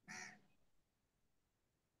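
Near silence: a pause in a video call, with one brief faint sound right at the start.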